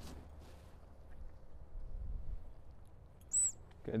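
Quiet outdoor ambience with a low rumble of wind on the microphone, and a single short, high-pitched chirp a little over three seconds in.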